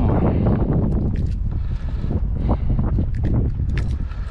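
Wind buffeting the microphone as a steady low rumble, with scattered light clicks and taps as pliers work a small lure's hook out of a small snook's mouth.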